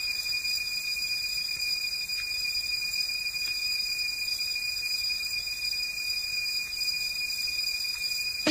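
Steady hiss with a thin, high, steady whine and no music or beat: the noise floor of an old recording of a club DJ session, exposed where the music has dropped out.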